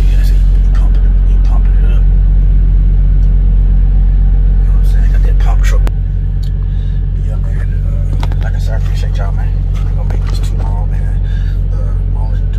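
Semi-truck's diesel engine idling, a steady low rumble heard from inside the cab; it drops a little in level about six seconds in.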